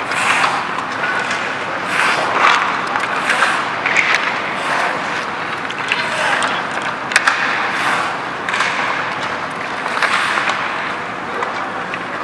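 Ice hockey practice on the rink: skate blades scraping and hissing on the ice in repeated bursts, with sharp clacks of sticks striking pucks over a steady background noise.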